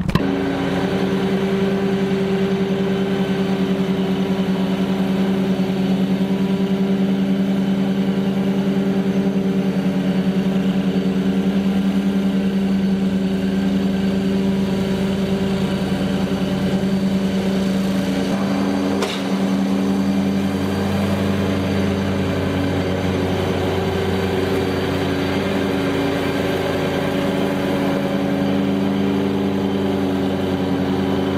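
Walker T27i zero-turn mower's Kohler engine and leaf-vacuum blower running as a steady hum. About two-thirds of the way in there is a brief click, and the lowest part of the hum changes pitch.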